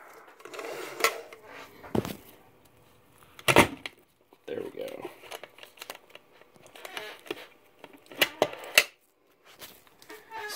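Spring-loaded metal draw latches on a Ludlum 14C rate meter's case being unsnapped and the case opened by hand: scattered sharp metallic clicks and clacks, the loudest about three and a half seconds in and a quick cluster near the end, with handling rustle between them.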